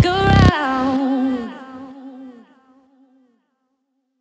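The ending of a slap house track: a drawn-out vocal line over a deep bass note. The bass cuts off about half a second in, and the voice fades away over the next two seconds.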